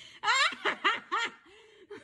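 A person laughing: a run of short, high-pitched laughs that tails off toward the end.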